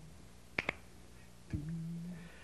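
Finger snaps keeping time to a cappella singing: a quick double snap about half a second in. A low hummed note begins near the end.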